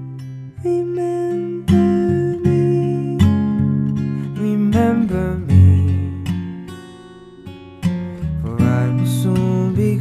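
Acoustic guitar playing a slow instrumental passage of strummed chords, each left to ring and die away. The sound fades between about six and eight seconds in before the next chord is struck.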